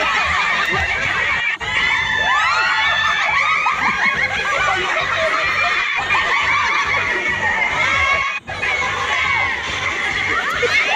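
A group of people shouting, shrieking and cheering excitedly, many voices overlapping, as they egg on players in a balloon-popping game.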